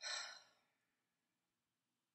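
A woman's exasperated sigh: one short, breathy exhale right at the start that fades within about half a second.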